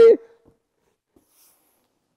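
The tail end of a man's excited exclamation, cut off just after the start, then near silence: room tone with a couple of faint ticks.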